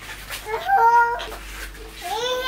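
A toddler's short, high-pitched whining cry lasting under a second, near the middle.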